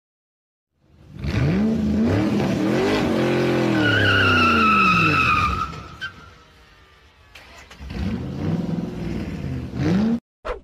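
Car engine revving, its pitch rising then falling, with a tyre squeal partway through. It then falls quiet, and a second, quieter engine pass rises and falls near the end.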